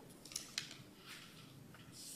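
A quiet pause with a few faint short clicks and light rustling, the clearest about half a second in.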